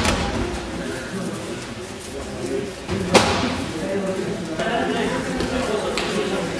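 A single sharp slap about three seconds in, a judoka's body or hand hitting the tatami mat, over steady overlapping voices in a large echoing hall.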